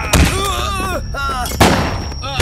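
Pistol gunshots in a film gunfight: two sharp shots, one just after the start and one about a second and a half later.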